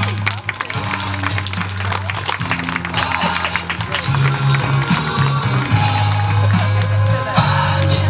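Loud music with sustained bass notes that change every second or so under busy percussion. A slowly rising held note comes in near the end.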